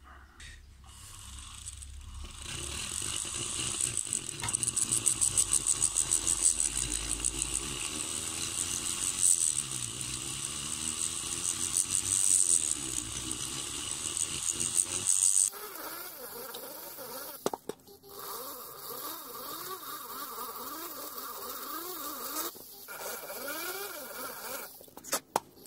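Pen-style high-speed rotary grinder with a small burr cutting the hardened filler in the intake valve port of a Piaggio Ciao moped's aluminium crankcase. It spins up over the first couple of seconds into a high whine whose pitch wavers as the burr bites and lets off. About two-thirds of the way through the sound changes suddenly to a lower whine that rises and falls in pitch.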